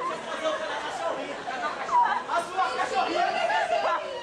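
Several voices talking over one another, a busy chatter of speech.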